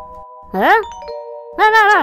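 Cartoon characters' wordless vocal sounds: a short rising 'hm?' glide about half a second in and a longer arching one near the end, over a held, chime-like musical chord.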